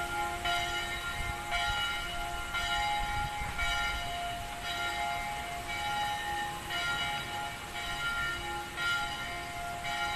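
Ringing, bell-like tones in a slow sequence, a new note about once a second, over a low rumble.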